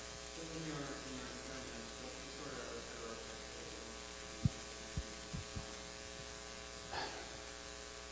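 Steady electrical mains hum in the recording, with a faint, distant off-microphone voice in the first few seconds and a few soft clicks a little past the middle.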